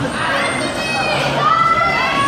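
Young bumper-car riders shouting and squealing over a steady crowd din, with high voices rising and falling, loudest in the second half.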